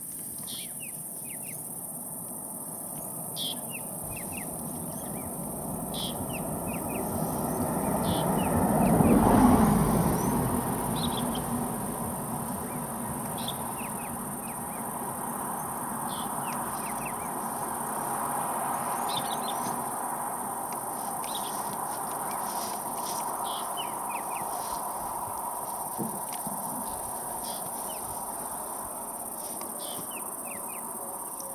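Bush ambience: a steady high-pitched insect drone with scattered short bird chirps. About a third of the way in, a low rushing noise swells to a peak and then slowly fades.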